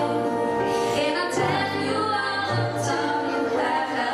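Three female voices singing a pop song together through handheld microphones, over a backing track with long held bass notes that change every second or so.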